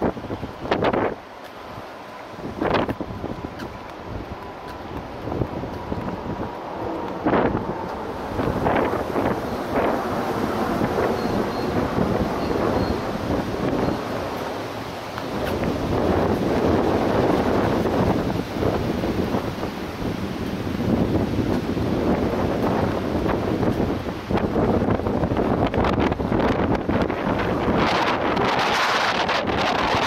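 Wind buffeting the camera microphone, a rough rushing noise that grows stronger and steadier about halfway through, with a few sharp knocks in the first ten seconds.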